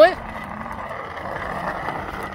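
Children's bicycle with plastic training wheels rolling over rough asphalt, a steady rolling noise from the tyres and training wheels.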